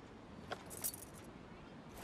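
A few short, bright jingling clicks: a single one about half a second in, then a quick cluster of them just before the one-second mark, over faint background hiss.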